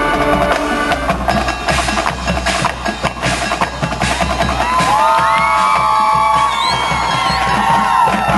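Marching band playing: a drum-led passage of sharp percussion hits, then from about five seconds in, held pitched notes that bend up and down over the drumming.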